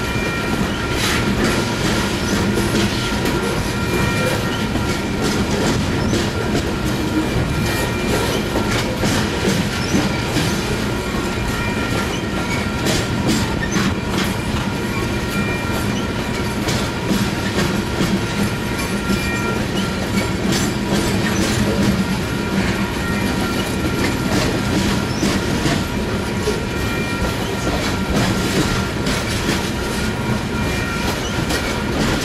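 Union Pacific coal train's hopper cars rolling past: a steady rumble with a running clatter of wheels clicking over the rail joints. Faint high steady squeals from the wheels come and go.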